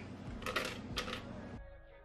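Two short knocks from handling things in the kitchen, about half a second and a second in, over a faint noisy bed. Near the end, quiet background music with steady tones takes over.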